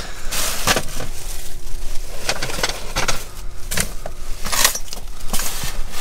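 Hands rummaging through dumpster trash: plastic bags and wrappings rustling and crinkling, with clinks and clatter of glass and other small items, in irregular bursts. A faint steady hum runs underneath.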